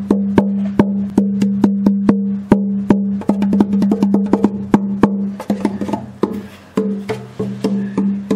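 The unfinished, braced body of an acoustic 12-string guitar tapped by hand like a hand drum: a quick, irregular run of knocks over a deep, boomy ringing that carries on between them, with a short lull a little after the middle before the tapping picks up again. The long ring is the sign of a very resonant body.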